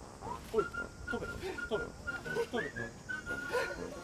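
Background music carried by a whistle-like melody of short high notes, with sliding lower sounds underneath.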